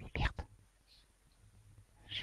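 A few short clicks and knocks close to the microphone in the first half-second, then faint room tone.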